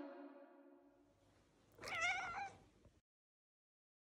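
The tail of a sung note fades out, then about two seconds in a domestic cat meows once, a short wavering call of about half a second.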